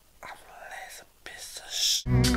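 A man's whispered, breathy voice in two short stretches; the second grows louder and hissier near the end.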